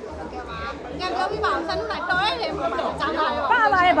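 People talking: speech, with chatter of other voices around it.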